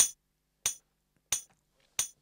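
Software metronome counting in at 90 BPM: four sharp, high clicks evenly spaced about two-thirds of a second apart.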